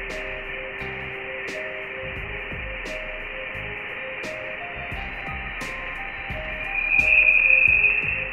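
Voyager 1 Plasma Wave Science data played as sound: a steady band of high hiss with a thin tone in it that swells into a louder high tone about seven seconds in. The swell is the plasma oscillation recorded around the time scientists believe Voyager 1 left the heliosphere for interstellar space. Faint background music with soft clicks and low held notes runs underneath.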